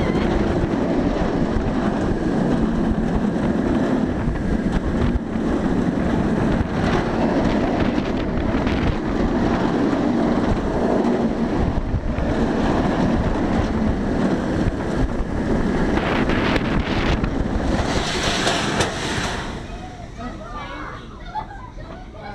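Bolliger & Mabillard steel inverted roller coaster train running at speed: a loud, steady roar of wheels on track and wind rushing over the microphone. Near the end a brief hiss comes as the train hits the brakes, and then the sound drops away as it rolls slowly.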